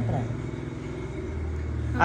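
A steady low mechanical hum, with a voice trailing off just at the start.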